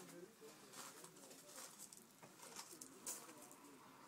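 Near silence: quiet room tone with a faint low murmur near the start and again about three seconds in.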